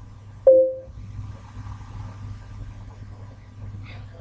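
A steady low electrical hum from the recording, with one short tone-like blip about half a second in.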